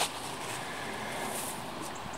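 Steady outdoor wind noise, an even hiss of wind on the microphone and through the garden plants.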